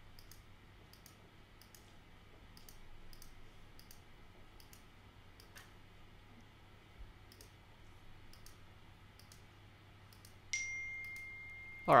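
Faint, irregular clicking of a computer mouse as a lasso selection is traced point by point around a figure in Photoshop. Near the end a short, steady high tone sounds.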